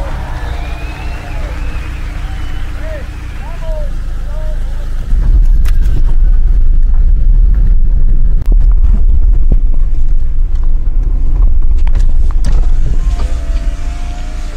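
Car driving on a rough gravel road, heard from inside the cabin: a loud low rumble with scattered clicks, starting suddenly about five seconds in and easing near the end.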